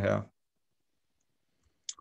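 A man's voice finishing a word, then silence, broken near the end by one short, sharp click just before speech resumes.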